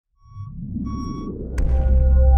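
Produced logo intro sting: two short electronic beeps over a swelling low rumble, then a sharp hit about one and a half seconds in that opens into a deep boom with a ringing held tone.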